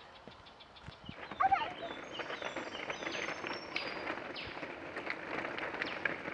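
Woodland birds singing: a dense run of short, high chirps and trills, with one brief louder call about a second and a half in.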